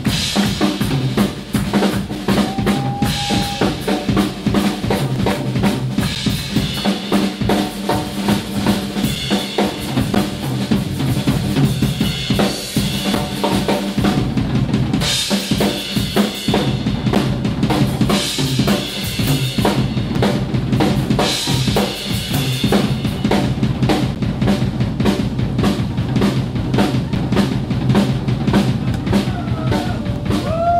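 Band of acoustic guitar, bass and drum kit playing an instrumental funk-rock jam, with the drums to the fore in quick, busy strokes over held bass notes.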